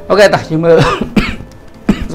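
A man talking, with a short cough near the end, over background music.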